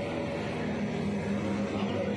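A machine running with a steady low hum.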